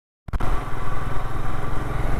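Royal Enfield Himalayan's single-cylinder engine running steadily as the motorcycle rides along, heard from the rider's seat. The sound cuts in abruptly about a quarter second in.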